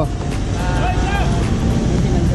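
A motorcycle engine idling with a steady low rumble, with faint voices in the background.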